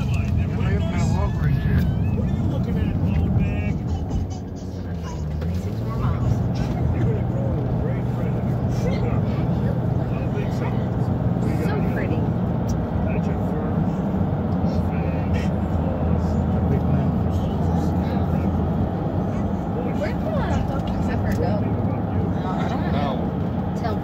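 Steady road and engine rumble inside the cabin of a vehicle driving at highway speed, with indistinct voices and music over it.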